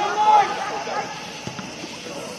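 A man's shout on the soccer field in the first half-second, then fainter calls from players.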